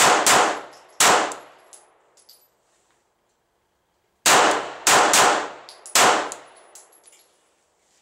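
9mm Glock pistol shots: three quick shots in the first second, a pause of about three seconds, then four more shots in about two seconds. Faint high tinkles follow some of the shots.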